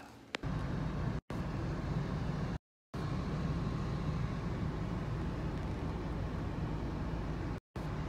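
Steady low rumble of a running car heard from inside the cabin. It starts about half a second in and cuts out abruptly to silence three times, the longest for about a third of a second near the three-second mark.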